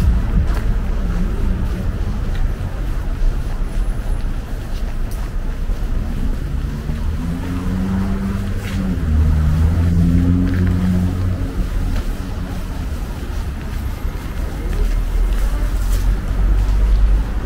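Road traffic on a city street: a steady rumble of passing cars, with one vehicle's engine pitch rising and falling from about six to eleven seconds in.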